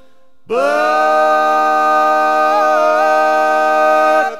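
Bluegrass harmony singing: several voices slide up into one long held chord about half a second in and sustain it to the end, with a brief waver in the top part partway through.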